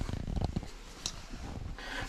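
Handling noise from a hand-held camera being moved: low rustling and rumbling, with a single short click about a second in.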